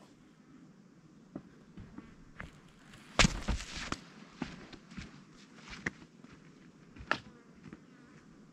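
Footsteps in sandals on a sandy, gritty dirt trail, crunching at an uneven walking pace. They are loudest about three seconds in as the walker passes close by, then grow fainter as he walks away.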